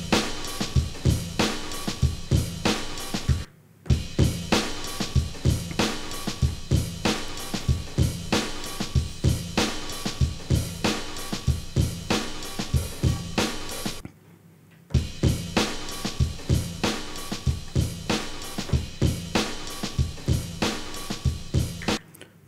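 A recorded drum-kit loop (kick, snare, hi-hat and cymbal in a steady beat) plays as the audio cued up to be sampled into an Akai MPC2000XL, while the input gain is set. It stops for a moment twice, about three and a half seconds in and again about fourteen seconds in, then starts again.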